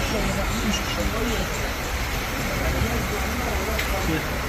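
Steady low rumble of open-air café ambience with road traffic, faint voices, and a short click near the end.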